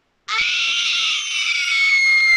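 A person screaming very loud: one long, high-pitched scream that starts about a quarter second in and is held at a nearly steady pitch.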